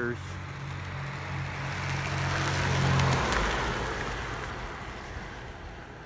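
1966 Chevrolet Corvair Corsa Turbo's turbocharged air-cooled flat-six driving past. Its steady engine note and road noise grow to their loudest about halfway through, the engine tone drops away as the car passes, and the sound fades as it moves off.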